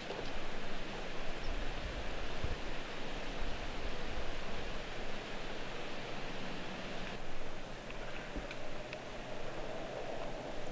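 Steady outdoor background noise: a soft, even hiss with a few low rumbles in the first seconds and some faint ticks near the end.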